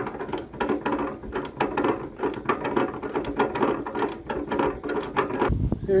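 Canal lock paddle gear being wound up with a windlass: the iron pawl clicks rapidly and steadily over the ratchet as the paddle is raised.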